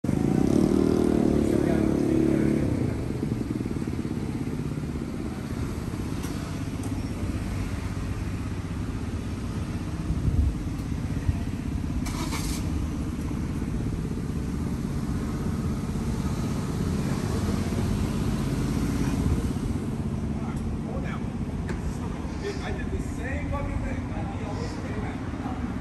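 Street traffic noise: a vehicle engine running close by for the first couple of seconds, then a steady low rumble of traffic with a few brief knocks.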